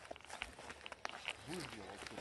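Faint footsteps on dry, scorched ground and debris, a scatter of light irregular clicks, with a brief low murmur from a man's voice about one and a half seconds in.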